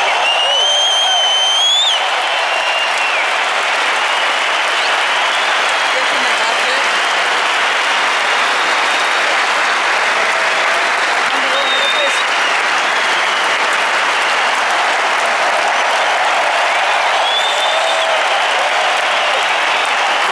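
Large concert audience applauding and cheering steadily in a big hall. A high rising whistle stands out in the first two seconds, with scattered whistles and whoops through the rest.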